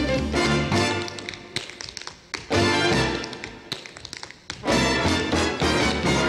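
Tap shoes striking the stage floor in quick rhythmic taps over a big-band orchestra. About a second in the band drops out and the taps go on almost alone for about three seconds, a solo tap break, before the band comes back in near the end.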